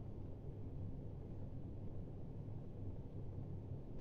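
Faint, steady low hum of a microwave oven running while it heats something.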